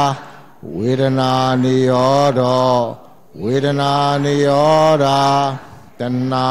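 Buddhist Pali chanting of the cessation sequence of dependent origination (paṭiccasamuppāda). It comes as two long phrases on a near-steady low pitch, with a short pause before each.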